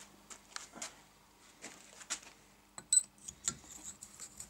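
Light handling of a valve in a Sabb J2 diesel cylinder head: a few faint metallic clicks and taps, with one sharp click shortly before three seconds in.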